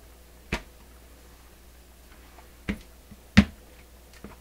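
Three sharp knocks from the wooden record player cabinet and its hinged lid being handled, about half a second, two and three-quarter seconds and three and a half seconds in, the last the loudest.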